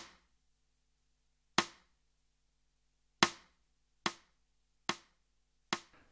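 Woodblock-like count-in clicks setting the tempo before the piece: six short, sharp clicks, the first three about 1.6 seconds apart and the last three quicker, about 0.8 seconds apart.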